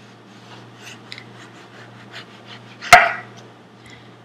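Kitchen knife slicing through an orange on a wooden cutting board: faint, repeated small cutting sounds, with one sharp knock about three seconds in.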